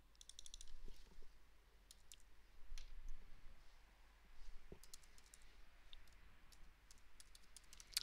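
Faint computer keyboard typing: scattered key clicks in short runs, with a quick burst of rapid clicks near the start.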